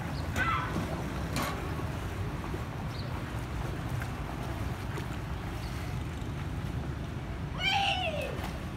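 Outdoor swimming pool ambience: a steady low rumble with short, high-pitched calls from children, the loudest a rising-then-falling shout just before the end.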